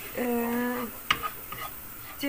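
A spoon stirring semolina as it toasts in melted margarine in a frying pan, with one sharp clink of the spoon against the pan about a second in. A brief steady hum sounds near the start.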